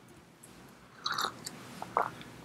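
A pause in speech: low room tone through a podium microphone, with soft mouth noises from the speaker about a second in and a brief click near the end.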